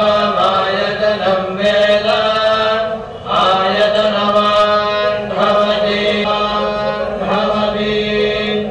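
Male voices chanting Vedic mantras in unison in a long, sing-song recitation, pausing briefly for breath about three seconds in and again near the end, over a steady low tone.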